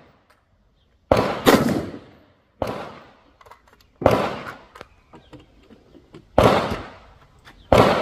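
AR-15 rifles firing six shots at uneven intervals, two of them less than half a second apart about a second in, each trailing off in a short echo.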